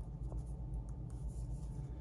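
Plastic Blu-ray cases and a slipcover being handled, with faint rubbing and rustling against the hands, over a steady low background hum.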